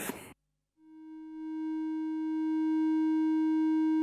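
A clean triangle wave from an Intellijel Dixie Eurorack oscillator: a steady mid-pitched electronic tone with faint overtones. It fades in about a second in and then holds steady, unclipped.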